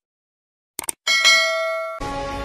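Subscribe-button animation sound effect: a quick double mouse click just under a second in, then a bright notification bell chime with several ringing tones that slowly fades.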